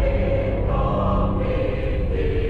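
A choir singing slow, held chords, the notes changing twice, over a steady low drone.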